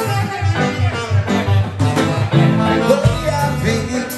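Live band playing, with a saxophone lead over electric bass and drums keeping a steady beat.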